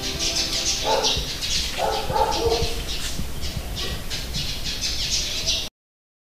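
Birds chirping in quick, irregular calls, with two louder squawks about one and two seconds in; the sound cuts off abruptly near the end.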